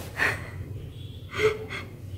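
Two short breathy sounds from a woman close to the microphone, the second louder with a brief touch of voice, like the start of a laugh. A faint low hum runs underneath.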